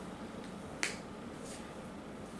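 Quiet room tone broken by a single short, sharp click a little under a second in.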